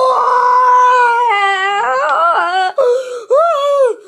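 A high-pitched voice wailing in a mock-dramatic cry: one long held note, then a wobbling, wavering stretch, then two shorter wails.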